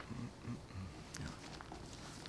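Faint rustling and light clicks of loose papers being handled at a lectern microphone, with a few soft low sounds in the first second.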